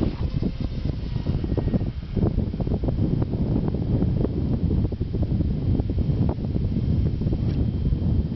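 Wind buffeting the microphone: a heavy, uneven low rumble with gusts that rises and falls.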